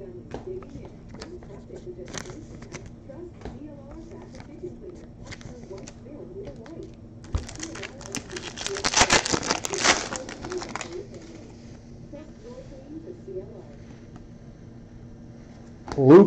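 A trading card pack wrapper being torn open and crinkled by hand, a loud crackly stretch of a few seconds from about halfway through, between faint clicks of cards and packs being handled.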